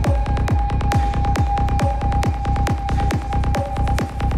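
Psytrance from a live DJ set: a steady four-on-the-floor kick drum at a little over two beats a second, with a held synth tone over it and fast hi-hats.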